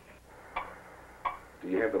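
Two sharp clicks, the first about half a second in and the second just past a second, over a faint low hum; a man starts speaking near the end.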